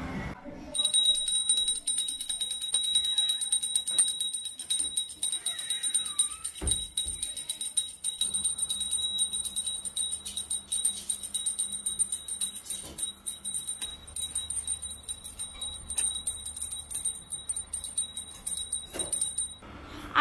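Small bell rung rapidly and continuously: a steady high ringing over a fast stream of strikes, starting about a second in and stopping just before the end.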